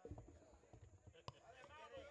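Near silence with faint talking voices in the background and a single sharp click a little over a second in.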